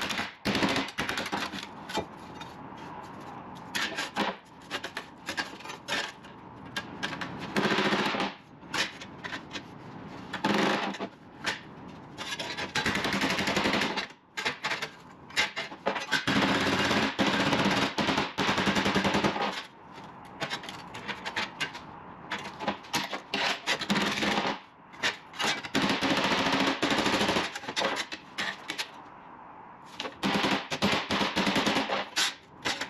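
A strip of sheet steel being hammered and bent into shape on a metal workbench: long spells of rapid metallic clatter and scraping, broken by short pauses.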